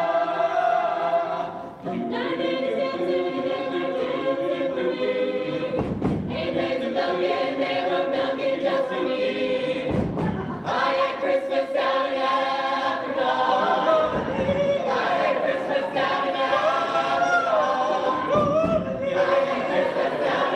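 A mixed-voice a cappella group singing in close harmony without instruments, holding sustained chords. Low thumps come about every four seconds, and near the end a single higher voice moves above the chord.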